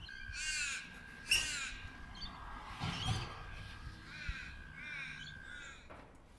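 A crow cawing several times, each harsh call falling slightly in pitch, spaced a second or so apart.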